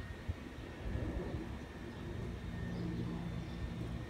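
Low, steady rumble of a motor vehicle's engine, swelling slightly after about a second and holding.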